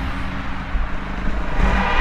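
KTM 690 Enduro's single-cylinder four-stroke engine running as the bike rides along, a steady low rumble.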